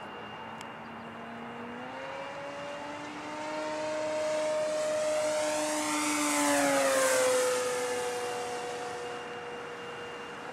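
Electric RC model P-47's brushless motor and propeller whining as the plane makes a fast low pass. The pitch rises as it approaches, it is loudest about six to seven seconds in, then the pitch drops as it goes by and fades away.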